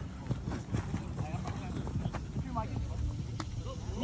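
Quick, irregular footfalls and scuffs of players running on artificial turf, over a steady low wind rumble on the microphone.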